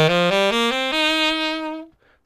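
Alto saxophone playing a quick ascending major pentatonic run from low C up to the C an octave above. The top note is held for about a second and stops just before the end.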